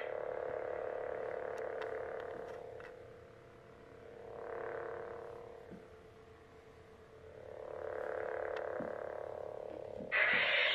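Toy lightsaber's electronic blade hum, a steady low buzz played through the hilt's speaker. It fades and swells back twice, about halfway through and near the end.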